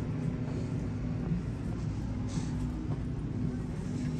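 Steady low hum of a large store's background: ventilation and refrigerated coolers running, with a brief soft rustle about two seconds in.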